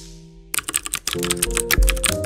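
Computer keyboard typing sound effect: a quick run of key clicks starting about half a second in, over soft held musical tones.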